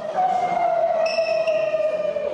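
A voice holding one long high note that sags slightly in pitch, growing brighter about halfway through.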